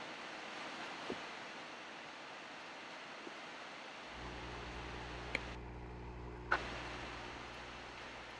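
Steady hiss of aerated nutrient solution bubbling and trickling into a hydroponic seedling tray from an air-stone airlift tube. A low steady hum joins about halfway through, with a few faint clicks.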